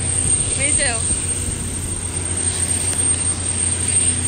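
Steady aircraft engine noise: a broad rush over a low hum, with a thin high whine held throughout. A voice is heard briefly about half a second in.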